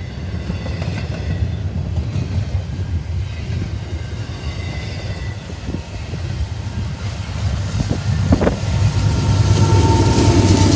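Double-stack intermodal freight train rolling past at close range: a steady rumble of wheels on rail with faint high wheel squeal at times. It grows louder over the last second or two as a mid-train diesel locomotive arrives.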